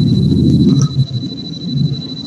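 A steady high-pitched electronic whine over a loud, muddy low rumble on a video-call audio line: audio interference while the presenter's sound is not coming through properly.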